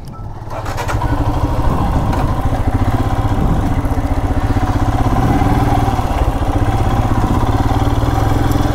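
Motorcycle engine pulling away and then running steadily at low road speed, with even firing pulses and some road and wind noise.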